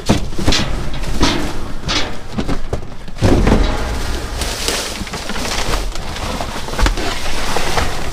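Plastic trash bags rustling and crinkling, and cardboard boxes scraping and knocking, as hands dig through a dumpster full of bagged rubbish and boxes, with a heavy thump about three seconds in.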